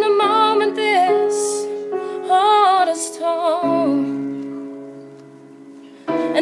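Female voice singing a slow melodic line over sustained piano chords, in two short phrases. A low chord is held after the second phrase and fades away over the last two seconds.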